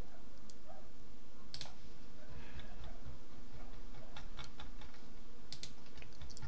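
A few scattered, light clicks of computer input, as the editor is scrolled and navigated, over a steady low electrical hum.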